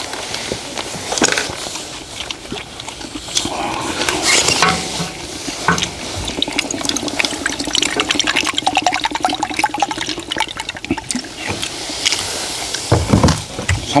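Water poured from a bottle into a small metal cup, a steady gurgling pour lasting several seconds in the middle. Short clicks of utensils against the wok come before and after it.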